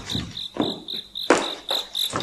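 Crickets chirping steadily, a high chirp repeating about four times a second, with a couple of soft, brief rustling sounds.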